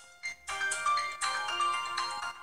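KingWear KW88 Pro smartwatches playing their electronic startup tune as they boot: a short melody of held notes from the watches' small speakers, starting a quarter second in.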